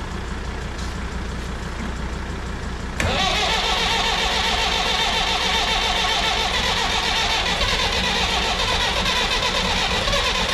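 Massey Ferguson 165 tractor's engine cranked by its electric starter from about three seconds in: the starter spins up and then churns on steadily and rhythmically, with exhaust smoke puffing from the stack, as the engine is turned over for its first start of the season.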